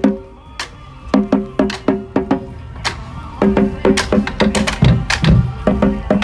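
Marching band drumline playing a cadence: tuned marching bass drums and cymbals struck in quick runs. The hits are sparse in the first second, break off briefly in the middle, then turn dense toward the end.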